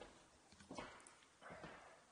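Faint footsteps on a hard floor, a few soft knocks spread over the couple of seconds, against near silence.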